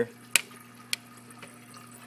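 Aquarium overflow tube with water trickling down it, over a steady low hum. Two sharp clicks in the first second.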